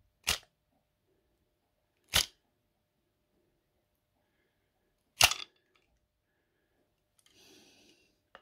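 Three separate sharp clicks a couple of seconds apart, the third the loudest, from a brass clock movement as its mainspring is let down through the winding key slipping in the hand, releasing the spring's tension.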